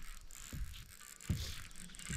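Faint mechanical sound from a baitcasting reel as an angler fights a heavy fish on a bent rod.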